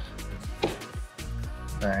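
Background music with sustained held notes.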